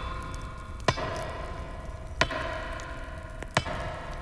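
Cinematic sound design for an animated logo intro: a sustained drone with steady tones, broken by three sharp cracks about a second and a half apart.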